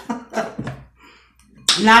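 A woman's voice: short bursts of laughter and speech, a brief pause, then talking again near the end.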